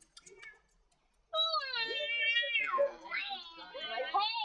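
Snow leopard calling at close range: a long, high, wavering meow-like call starting about a second in, followed by rougher, arching calls that run on past the end.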